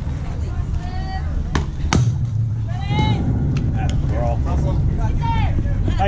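A softball bat strikes the ball with a single sharp crack about two seconds in, the loudest sound, followed by spectators' shouts and calls over a steady low rumble.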